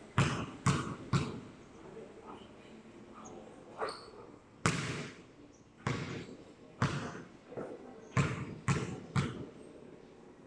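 A basketball bouncing on a concrete court floor, about ten uneven bounces. Three come in quick succession at the start, single ones follow through the middle, and a closer run comes near the end.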